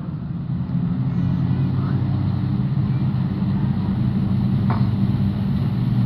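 Engines of a pack of junior 1200 sedan speedway cars running at low speed as the field circles the dirt track to line up for a restart. A steady drone that swells a little in the first second, then holds.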